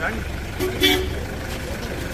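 A short car horn toot about two-thirds of a second in, two steady notes held briefly, over the low rumble of a vehicle and the voices of people crowding round it.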